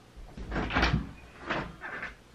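A door being opened: a few knocks and clatters, the first about half a second in and more near the end.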